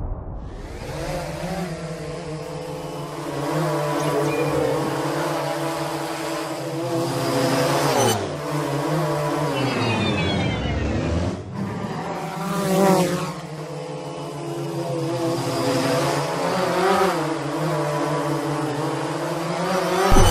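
Sound-effect whir of a quadcopter drone's motors, a steady hum whose pitch sags and then climbs again about eight to eleven seconds in, with a whoosh about thirteen seconds in.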